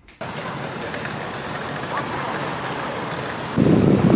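Steady city street noise with traffic, starting abruptly about a quarter of a second in.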